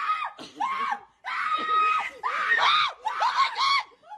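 A domestic cat yowling in a string of loud, drawn-out meows, about five calls that rise and fall in pitch, with a brief pause about a second in.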